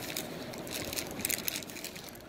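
A plastic parts bag crinkling and rustling as it is picked up and handled, in a quick irregular series of crackles.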